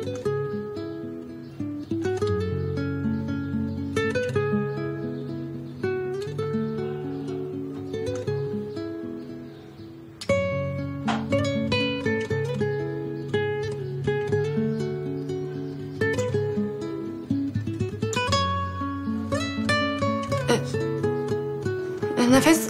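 Background music: a gentle acoustic guitar piece with plucked chords about every two seconds. It fades briefly about ten seconds in, then comes back in.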